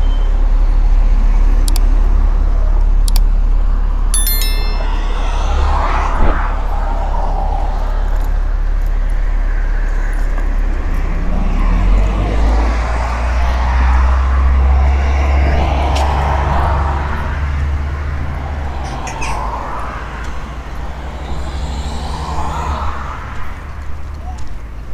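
Street traffic: cars passing one after another, each swelling and fading, over a steady low rumble.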